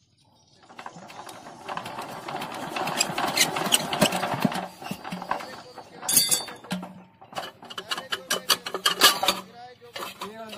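Single-cylinder diesel engine being hand-cranked to start: a fast metallic clatter that builds over a few seconds, breaks off about halfway with a clank, then comes again briefly.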